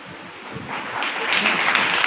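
Audience applauding, starting about half a second in and building up to full, steady clapping.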